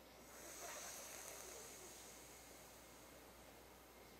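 Faint hissing in-breath drawn through a tongue curled into a tube, as in sitali pranayama breathing. It starts just after the beginning, is strongest for about a second, then slowly fades away.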